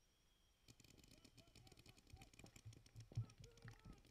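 Faint, rapid clicking of paintball markers firing out on the field, with faint distant voices calling and one sharper knock a little after three seconds.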